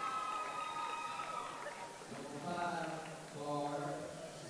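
A man's voice in the gym, likely over the public-address system, stretching out long, drawn-out words. One long held sound runs through the first second and a half, and two shorter ones come near the end.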